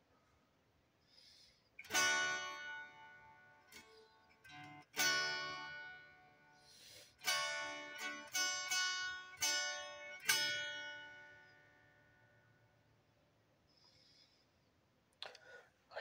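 Harp strings plucked in a slow, free phrase: about ten ringing notes and chords over some eight seconds, each left to ring and die away. The last one fades out a few seconds before the end.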